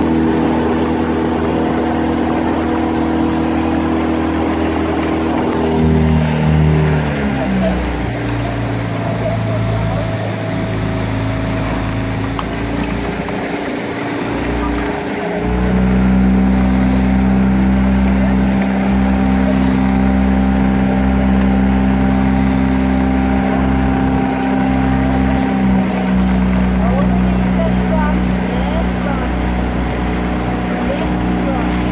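Motor launch engine running steadily, easing off about six seconds in, running lower and rougher for several seconds, then picking up again about fifteen seconds in and holding a steady, slightly louder pace.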